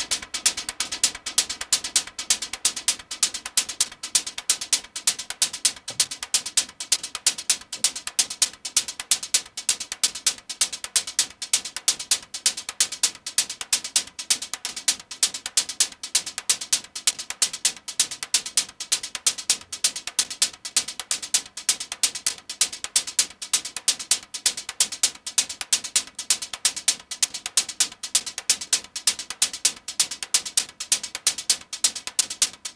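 Modular-synth techno hi-hat loop: sharp, high ticks in a fast, even rhythm, with no kick or bass underneath. It runs through a delay clocked to the sequencer, with a lot of delay on it.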